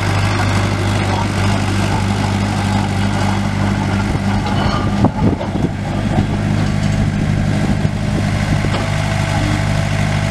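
Komatsu D21P-6 dozer's four-cylinder diesel engine running steadily, with a short knock about halfway through.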